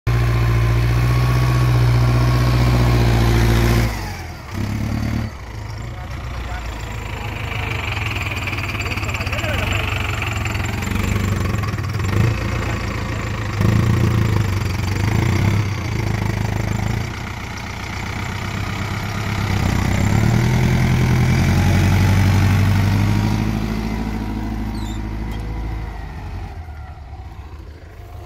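Mahindra Arjun Novo tractor's diesel engine running under load as it pulls a tine cultivator through tilled soil close by. The engine note swells and fades several times, with a sudden drop about four seconds in, and grows quieter near the end.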